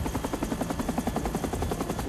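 Military helicopter flying past: the fast, even chop of its main rotor, about ten beats a second.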